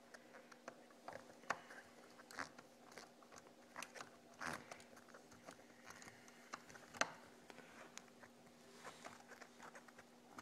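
Faint, scattered small clicks and scrapes of a screwdriver working screws out of a Traxxas Rustler RC truck's plastic chassis, with a sharper click about seven seconds in, over a faint steady hum.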